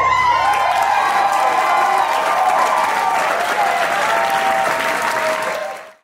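Audience applauding and cheering with whoops right after the dance music stops. It fades out just before the end.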